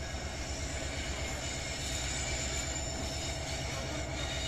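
Diesel-hauled freight train of oil tank wagons rolling round a wide curve some distance off, a steady low rumble with no distinct knocks or horn.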